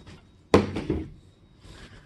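A chair being put back at a table, with one sharp knock about half a second in and a couple of lighter knocks just after.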